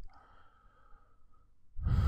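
A single computer-mouse click at the start, then a quiet stretch, then a person's audible breath out, like a sigh, near the end.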